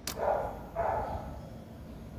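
A sharp click as the ignition key switch of a Mondial Strada 125 scooter is turned on, followed by two short, rough sounds within the first second or so.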